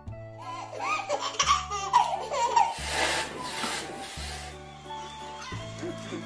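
A baby laughing hard in repeated peals of laughter for about four seconds, fading out after that, over background music.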